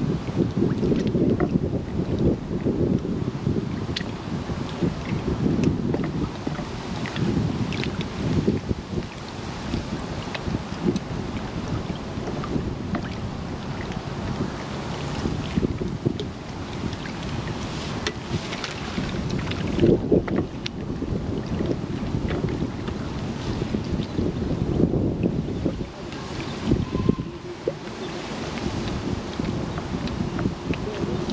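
Wind buffeting the microphone in a low, gusting rumble, with choppy reservoir water lapping and a few faint ticks.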